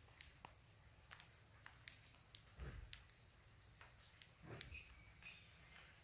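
Near silence outdoors, with a few faint scattered clicks and two soft brief low rustles.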